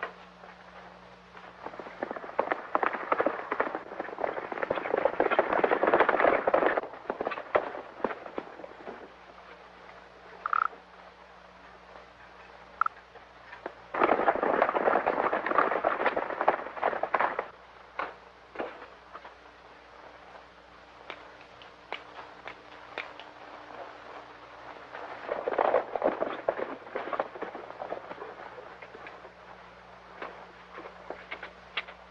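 Horses galloping: the rapid clatter of hoofbeats comes in three passes that swell and fade, the middle one starting abruptly, over the steady low hum of an old film soundtrack.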